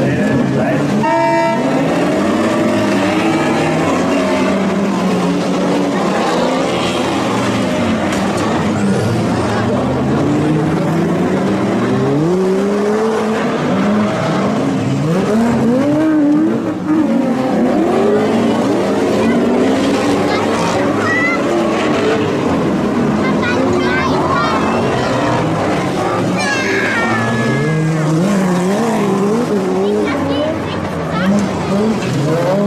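Several modified race car engines (over 1800 cc class) revving hard and dropping back in overlapping waves as the cars accelerate and brake around a dirt track.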